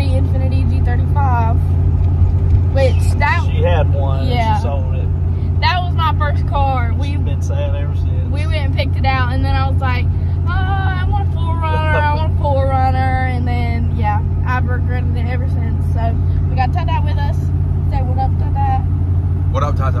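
Steady low drone of a truck's engine and road noise heard inside the cab while driving, with people talking over it throughout.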